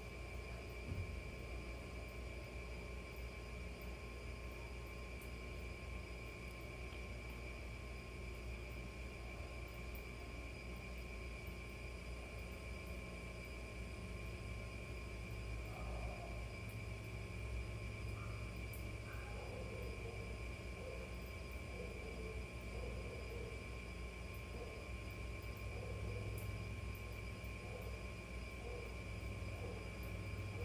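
Quiet background room tone: a steady low hum with a faint constant high-pitched whine. From a little past halfway, faint soft sounds repeat roughly once a second.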